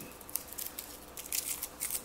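A few faint, short clicks and rustles of small objects being handled by hand on a tabletop.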